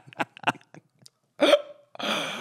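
Men laughing into handheld microphones: quick short bursts of laughter that trail off, a brief pause, then one louder burst of laughter about one and a half seconds in.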